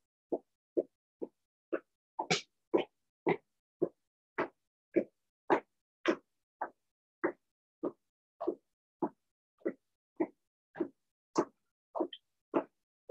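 A person doing fast mountain climbers with hands on a chair: a steady rhythm of short puffing sounds, just under two a second, from the alternating foot strides and breathing.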